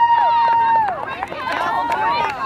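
Spectators cheering: one long high "woo" held steady until about a second in, then several voices calling out over each other.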